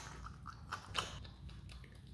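Himalayan marmot chewing and biting a piece of orange: a quick run of small chewing clicks, the loudest about a second in.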